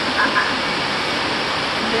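Heavy rain pouring down, a steady, even hiss of downpour.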